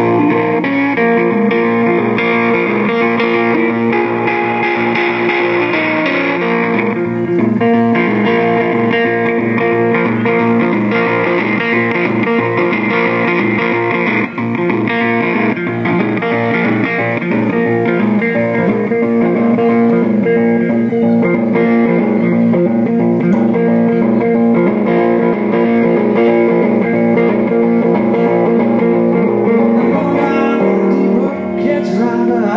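Solo amplified guitar played live through a PA, picking a steady, repeating instrumental pattern without singing.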